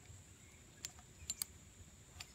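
A few faint, sharp metallic clicks of a metal carabiner being handled and worked off rigging.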